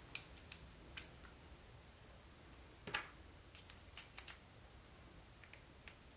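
Faint small clicks and taps of small bearings and a metal wheel axle being handled and pressed into a blue plastic RC-car upright. There is a louder single click about three seconds in and a quick run of clicks around four seconds.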